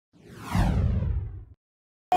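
Intro whoosh sound effect: a single swoosh falling in pitch over a low rumble, swelling in and then cutting off suddenly about a second and a half in.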